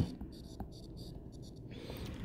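A stylus writing on a tablet's glass screen: a faint run of short scratching strokes that stops shortly before the end.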